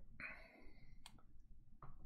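Very quiet: a soft breath, then a few faint sharp clicks, two about a second in and one near the end.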